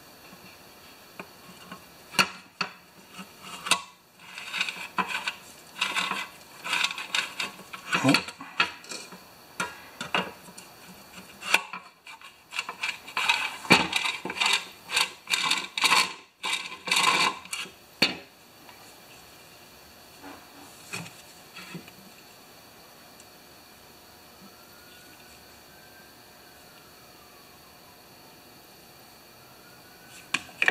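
A recoil starter's plastic pulley and spring being fitted into and handled in its housing by hand: irregular clicks, knocks and rattles for the first half, then quiet.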